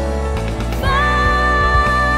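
A pop-style worship band playing: drums, keyboard and electric guitar. A woman's voice comes in about a second in, holding one long note.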